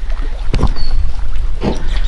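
Wind buffeting the camera microphone, a steady low rumble, with a couple of brief soft knocks.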